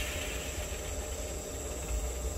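Two vertical LED fog machines standing idle just after a fog burst: a low steady hum with a faint high-pitched whine.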